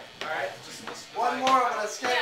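People talking, with a light tap about halfway through.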